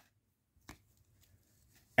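Near silence, broken by a single brief click about two-thirds of a second in, from hands handling a trading-card pack and its cards.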